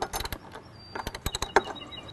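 A hand wrench tightening the screws of a stainless-steel transducer mounting bracket into a boat's transom, giving quick runs of clicks. One short burst comes at the start and a denser run about a second in.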